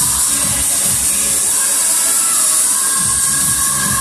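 Electronic dance music for a step-aerobics routine. The bass drum drops out for about two seconds in the middle while held synth tones carry on, then the beat comes back in near the end.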